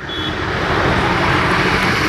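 Steady road traffic noise, an even rushing sound with no distinct events.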